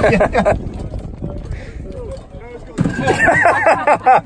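A group of men laughing and talking, quieter through the middle, with a loud burst of laughter near the end.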